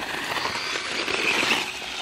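Losi Promoto MX RC motorcycle running across loose sand and gravel: a steady, noisy rush of tyres and drivetrain that swells a little about a second and a half in as it passes close by.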